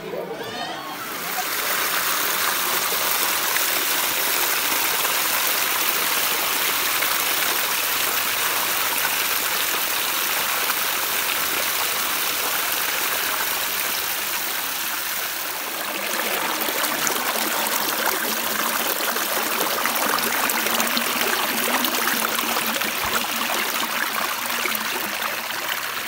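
Shallow stream water running and rippling over rocks, heard close to the water as a steady rushing that starts about a second in. Its sound shifts slightly about two-thirds of the way through.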